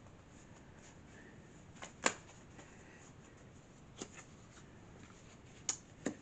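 Tarot cards being handled and drawn from the deck: a few soft, sharp card snaps and taps, the loudest about two seconds in, with another near the end as a card is laid down.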